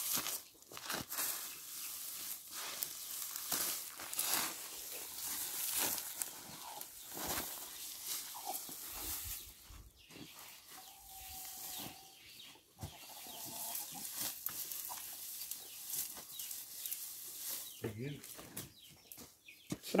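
Dry chopped sugarcane and grass forage rustling and crackling as it is tossed and mixed by hand, in irregular handfuls.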